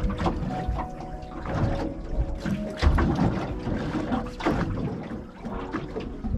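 Sea water slapping and sloshing against the hull of a small boat, with several sharp knocks.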